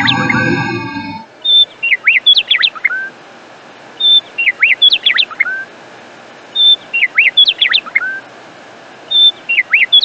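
Bird chirps used as a sound effect: the same short phrase of whistled chirps and sweeps repeats identically four times, about every two and a half seconds, as a loop. A low growl-like sound with a ringing chime fades out in the first second.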